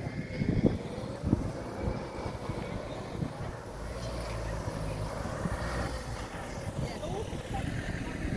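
Street ambience with a motor vehicle's engine running, its low rumble strongest from about four to seven seconds in, and a couple of sharp knocks in the first second and a half.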